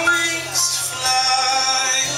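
A live band plays a song: electric guitar, electric bass and drums, with a sung melody line over them.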